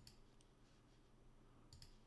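Faint computer mouse clicks against near silence: a single click, then a quick double click near the end.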